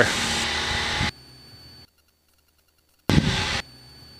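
Cessna 172 cockpit noise, engine and airflow hiss, picked up by the headset intercom. It cuts off abruptly about a second in and goes dead silent as the intercom squelch closes. The squelch opens again for a short half-second burst of noise about three seconds in.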